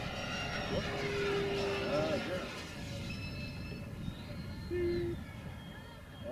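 Radio-controlled model floatplane's motor running as the plane passes low and climbs away: a steady high whine made of several thin tones, over a low rumble.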